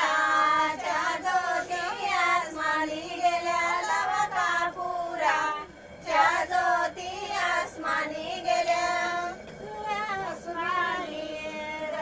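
Women singing an ovi, a Marathi folk song of the grinding mill, in high voices without instruments, with a short break about six seconds in.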